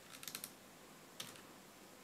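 Faint computer-keyboard key clicks: a quick run of several clicks in the first half second, then a single click a little over a second in, as Ctrl+O is pressed.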